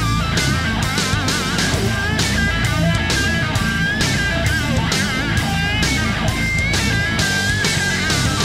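Rock music with an electric guitar playing a lead melody, some held notes wavering, over a steady drum beat and bass.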